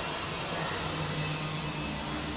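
Steady hiss with a low hum underneath and no distinct events.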